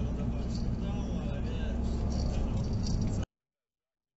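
Steady low road and engine rumble inside a moving car's cabin, picked up by a dashcam, with light rattling and faint voices over it. It cuts off abruptly to dead silence a little over three seconds in.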